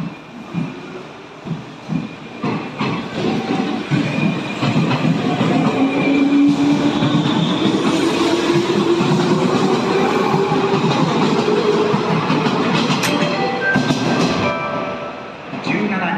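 JR West 201 series electric train pulling out and accelerating past, with a motor whine that rises slowly in pitch over the rumble of the wheels. Wheels knock and clatter over the rail joints. The sound falls away near the end as the last car clears.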